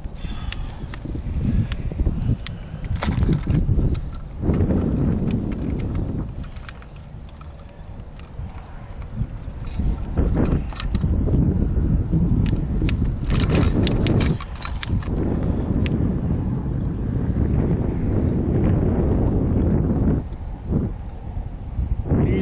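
Wind buffeting the microphone, a low rumble that swells and fades, with scattered knocks and clicks from handling a caught channel catfish with fish grippers in the boat.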